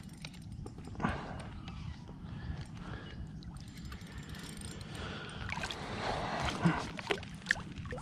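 Water sloshing around a plastic kayak with scattered small knocks and clicks of fishing gear, as a hooked trevally is played to the landing net; the knocks and splashes get busier toward the end.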